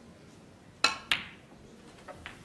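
Snooker cue tip striking the cue ball, then about a quarter second later the cue ball clicking sharply into the yellow. Two crisp clicks, the second ringing a little longer.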